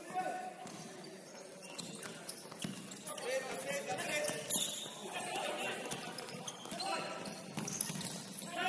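Futsal in play on a wooden court in a large sports hall: players shouting to each other, with sharp strikes of the ball on foot and floor, the loudest about four and a half seconds in.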